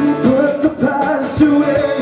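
A man singing with a strummed guitar in a live solo performance.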